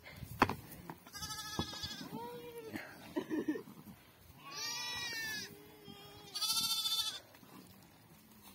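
A flock of sheep and goats bleating: about three louder, high, wavering bleats, with fainter, lower bleats from the flock between them.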